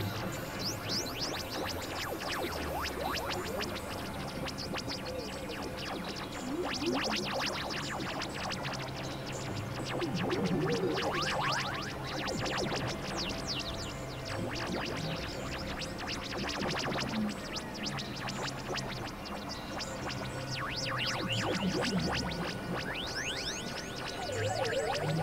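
Experimental electronic synthesizer music: stepped low drone notes shifting under a dense, noisy texture, with many quick falling and rising high-pitched sweeps throughout.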